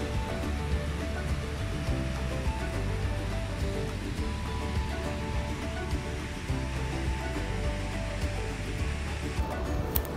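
Background music playing over the rushing of whitewater cascading down a rocky river. The water noise drops away abruptly about half a second before the end while the music carries on.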